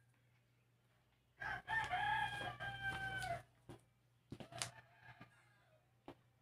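Squeaky rubber chicken toy being squeezed in a puppy's bite, giving one long crow-like squawk of about two seconds, then a few short squeaks.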